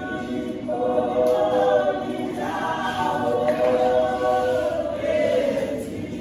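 Women's church choir singing a gospel song in isiNdebele, several voices in harmony holding long notes.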